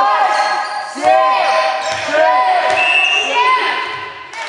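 Sounds of a basketball game in a sports hall: many short squeaks of players' shoes on the court, with the ball bouncing.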